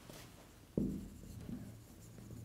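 Marker writing on a whiteboard: a sudden thump about three quarters of a second in, then faint taps and strokes of the marker on the board.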